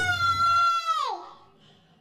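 A rooster crowing once: the call rises, holds one high pitch for about a second, then drops away.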